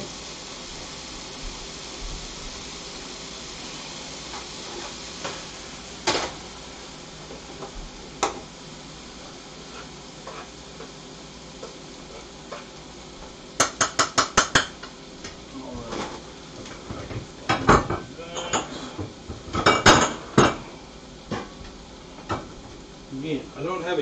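Diced chicken sizzling steadily in a frying pan on an electric stove, with pans and utensils handled over it. There are a few single clicks, a quick run of about eight sharp taps about halfway through, and a stretch of clattering and knocking in the last third.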